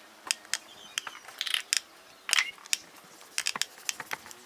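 Small splashes and drips of water in a plastic basin as hands rub and wash a soaking foot: an irregular run of short wet clicks and splashes, the biggest about one and a half and two and a half seconds in.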